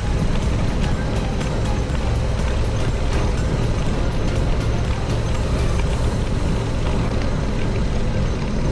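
Background music with a steady beat, mixed with the Jeep's engine running and its tyres rolling on a dirt track.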